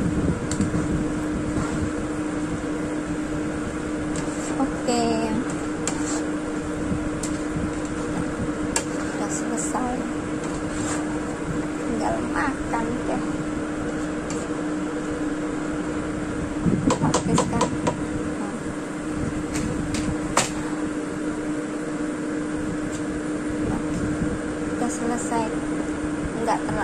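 Rice vermicelli being stir-fried in a wok: a spatula and chopsticks scrape and toss through the noodles, with a few sharp clicks of the utensil against the pan. Underneath runs a steady mechanical hum with a constant low tone.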